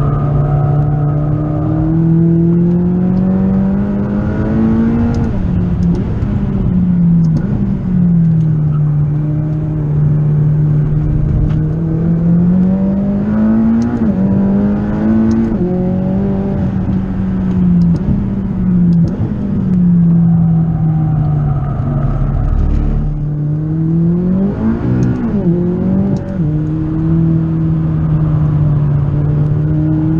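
McLaren 540C's twin-turbo V8 heard from inside the cabin at track speed. It repeatedly climbs in pitch under acceleration and drops back at each gear change. About 25 seconds in, a quick flurry of rising and falling engine notes.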